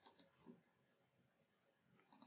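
Near silence with faint computer mouse clicks: two close together at the very start and a softer one about half a second in.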